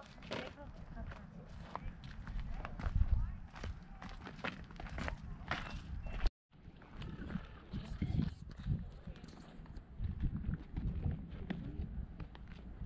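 Footsteps crunching on a dry dirt-and-gravel trail, with wind rumbling on the microphone. The sound drops out briefly about halfway through.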